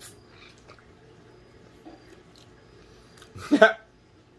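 Faint mouth sounds of a man biting and sucking on a lime slice, then a short, loud wordless vocal reaction about three and a half seconds in.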